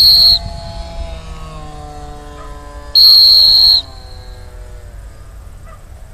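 Dog training whistle blown in steady, high single-pitch blasts: one ends just after the start, and a longer blast of nearly a second comes about three seconds in.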